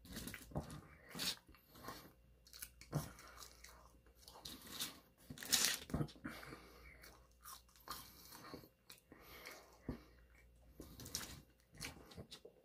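A person chewing and eating French fries close to the microphone: scattered soft mouth noises and small clicks with quiet gaps, and a short louder crackle about five and a half seconds in.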